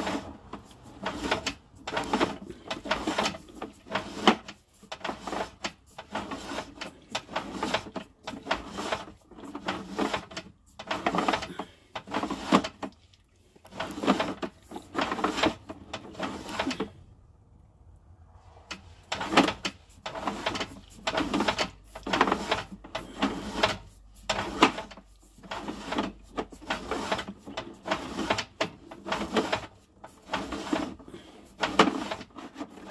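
Sewer inspection camera's push cable being fed by hand down a drain line: a quick, irregular rattling and scraping, a few strokes a second, that stops for about two seconds a little past the middle before going on.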